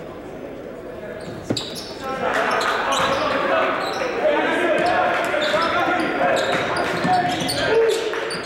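Basketball game in a gym: a single sharp knock about one and a half seconds in, then players' and spectators' voices grow louder and the ball bounces on the hardwood court as play breaks out after a free throw.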